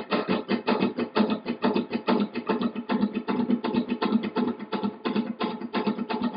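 Flamenco guitar rasgueado in the 'caballo' pattern: index finger up, ring finger down, index down, repeated as an even, fast stream of strums at about six or seven strokes a second.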